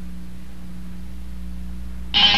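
Steady electrical mains hum with a faint hiss underneath, the music having stopped.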